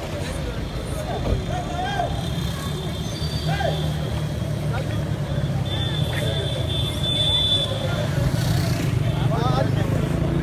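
Open-air street sound: scattered voices of people talking and calling out across the road over a steady low rumble. A thin high steady tone lasts about two seconds a little past the middle.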